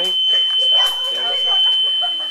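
A steady, high-pitched electronic tone holding one pitch, like a buzzer, under voices of people talking.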